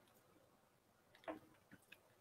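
Near silence: room tone, with a few faint, short clicks, one a little over a second in and two more near the end.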